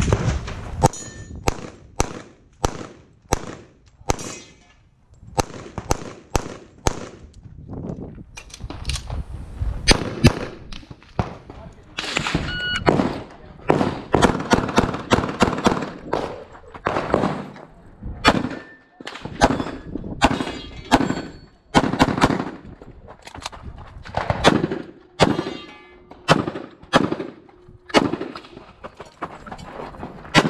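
Rapid pistol fire on a practical shooting course: dozens of shots, mostly in quick pairs, in bursts separated by brief pauses as the shooter moves between positions. Now and then a struck steel target rings with a short metallic ding.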